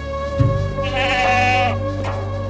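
A sheep bleating once, a wavering call just under a second long starting about a second in, over background music.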